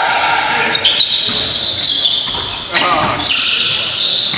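Basketball game sounds on a gym's hardwood floor: the ball bouncing, sneakers squeaking, and players' voices calling out.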